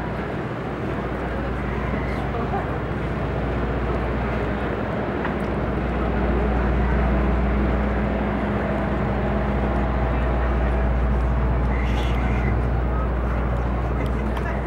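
Busy city street ambience: a steady low engine hum that grows louder midway, under the chatter of passing crowds.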